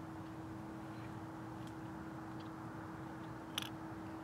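Quiet outdoor background: a steady low hiss with a faint steady hum, a few faint ticks, and one sharp click near the end.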